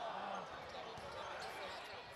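Faint live basketball game sound in a gym: low background crowd noise with a few soft knocks of the basketball.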